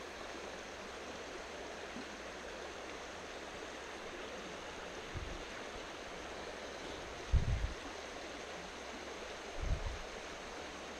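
Small forest stream running steadily over a shallow riffle, a constant rush of water. Three brief low thumps break in about five, seven and a half and nine and a half seconds in, the middle one the loudest.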